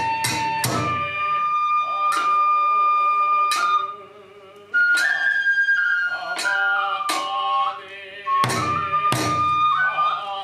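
Kagura accompaniment: a bamboo transverse flute plays a held, stepping melody over uneven strikes of a taiko drum and percussion. The music drops away briefly about four seconds in, then resumes with the flute a step higher.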